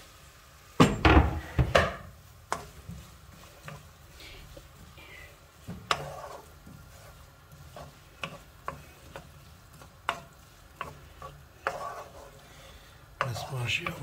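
A wooden spatula stirring and scraping chopped onion in hot oil in a non-stick frying pan, with scattered taps against the pan and a faint sizzle. A few louder knocks about a second in.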